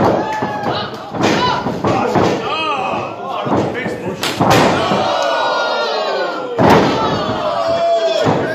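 Wrestlers' bodies slamming onto the ring mat in a string of heavy thuds. The two loudest come a little past the middle and about two-thirds of the way in, amid shouting voices.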